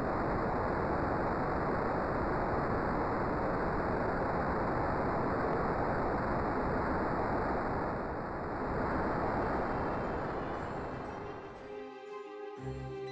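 Rocket launch sound effect: a steady rushing noise of rocket engine exhaust that eases off near the end, as music comes in.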